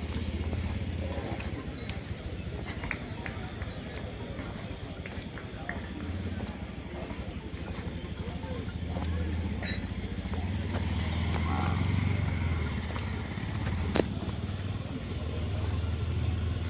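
Footsteps on a dirt path, indistinct background voices and a low rumble on the microphone, with one sharp click near the end.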